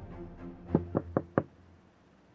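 Knuckles rapping four quick times on a car's side window, about a second in, over soft background music.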